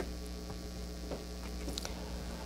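Steady low electrical mains hum from the room's microphone and sound system during a pause in speech, with a few faint clicks.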